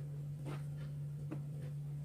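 A spatula scraping against a mixing bowl as cake batter is folded, a few faint short scrapes over a steady low hum.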